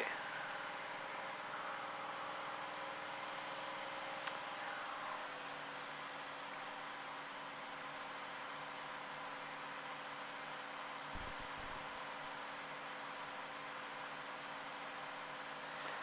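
Faint, steady cabin drone of a Cirrus single-engine piston airplane's engine and propeller in cruise, a hum with several steady tones under an even rushing noise. There is a brief low bump about eleven seconds in.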